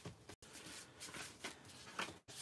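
Faint rustling and rubbing of cardstock as hands fold it along its score line and press it flat.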